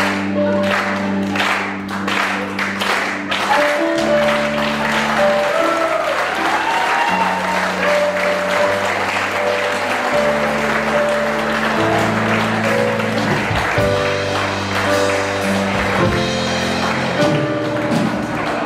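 Audience applauding over music of held chords that change every second or two.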